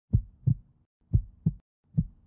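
Heartbeat sound effect: low double thumps in a lub-dub pattern, a pair just under once a second, twice, with a third beginning right at the end.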